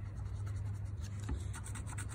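Scratch-off lottery ticket being scratched with a thin tool: a run of light, quick scratching strokes on the ticket's coating.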